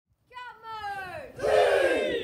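A high voice shouting with a long falling pitch, joined about a second and a half in by a louder group of children's voices yelling together, also falling in pitch.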